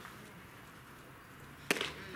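A single sharp smack about three-quarters of the way through, over a quiet outdoor background.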